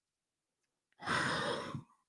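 A person sighs once into a close microphone: a breathy exhale lasting just under a second, starting about a second in.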